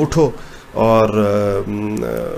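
A man's voice: a short word, a brief pause, then a long, drawn-out phrase intoned at a steady pitch, like a chanted recitation.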